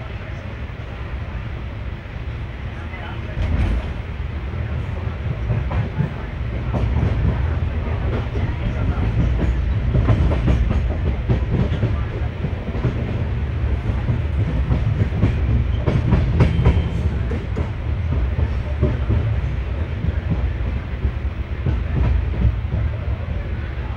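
Express train running on the track, heard from aboard: a steady low rumble with the clatter of wheels on the rails, growing louder a few seconds in.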